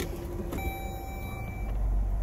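Dodge Journey's electronic chime sounding as the car is put into reverse and the backup camera comes on: one steady tone, starting about half a second in and lasting about a second. Under it a low rumble grows louder near the end.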